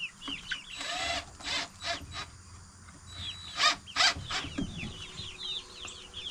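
A flock of chickens clucking, with many short falling chirps repeating throughout. A few short rustles or knocks come in between, around the first and fourth seconds.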